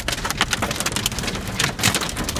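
Hail and heavy rain pelting a truck's roof and windshield, heard from inside the cab: a dense, irregular clatter of sharp hits over a steady wash of rain.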